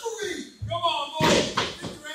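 Voices shouting around a wrestling ring, with a loud slam about a second and a quarter in, typical of a body or boot hitting the ring canvas.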